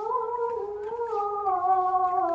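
A high voice chanting Quran recitation (mengaji), holding one long, slowly wavering note that sinks a little in pitch in the second half.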